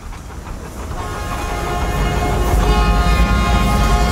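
Steam locomotive approaching: a low rumble and chuffing that grow steadily louder, with a held high note joining about a second in.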